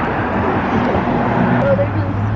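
A car engine running close by, its steady low hum setting in about halfway through, over a loud wash of parking-lot traffic noise and distant voices.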